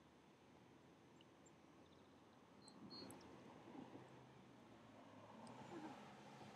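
Near silence: faint outdoor background hiss, with a couple of short, faint high squeaks about halfway through.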